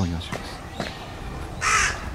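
A crow cawing once, starting near the end.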